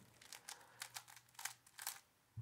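Stickerless plastic 3x3 speed cube being turned slowly by hand through a G-perm, its layers giving a string of faint, irregular clicks.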